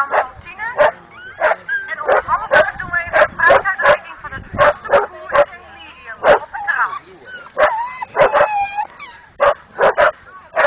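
A dog barking over and over, roughly a bark every half second, with some high-pitched yips mixed in.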